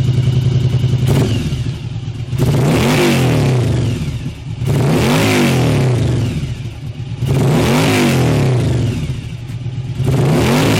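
Yamaha Dragstar 1100's air-cooled V-twin engine idling steadily on a stationary bike, then revved three times, each rev rising and falling back toward idle over about two seconds.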